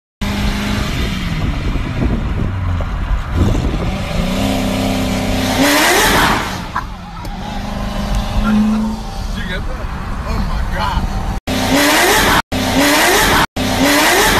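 Car engines accelerating hard at speed, heard from inside a car, the engine note climbing and dropping with gear changes, with voices over it. The sound cuts out abruptly a few times near the end.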